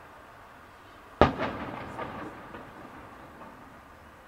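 Boom of an aerial firework shell bursting, arriving about a second after its red flash, followed by a rolling echo that dies away over about two seconds.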